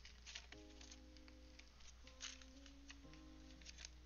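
Very faint background music of held notes changing in steps, under a low hum, with faint ticks of trading cards being handled.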